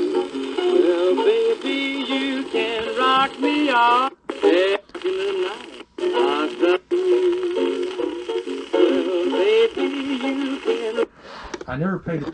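An old record playing on a turntable: a sung song with instrumental backing, with a few short gaps partway through. The music cuts off about eleven seconds in, when the needle is lifted.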